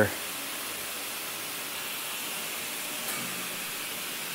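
A steady, even background hiss with no distinct events, and a faint low hum briefly about three seconds in.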